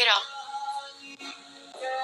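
A man singing a song phrase; his sung line ends just after the start, a quieter gap with faint steady music follows, and he starts singing again near the end.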